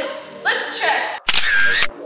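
Camera shutter sound effect, two sharp clicks about half a second apart near the end, after a burst of laughing voices.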